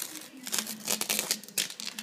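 A sheet of old clear countertop finish crackling and tearing in an irregular run as it is peeled off the counter by hand, coming away like peeling sunburnt skin.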